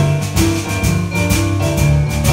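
Live boogie-woogie from a band of two digital pianos and a drum kit: piano chords over a bass line, with a steady beat of drum and cymbal strokes about four a second.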